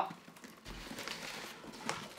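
Soft rubbing and rustling of a cardboard box as a glass bottle is drawn out of its cardboard divider. There is a low thud just under a second in and a light click near the end.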